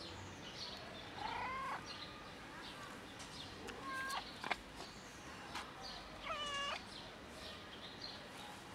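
Fluffy domestic cat meowing three times: a longer meow about a second and a half in, a short one near the middle, and another long one a little before the end.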